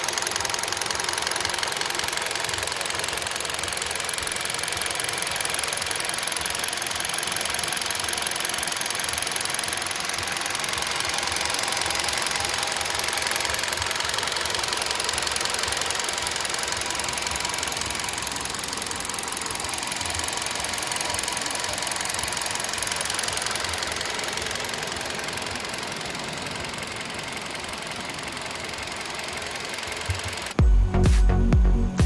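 A Kia Rio 1.6-litre four-cylinder petrol engine idling, heard close up under the open hood: a steady running sound with a fast, even ticking. It grows a little quieter near the end.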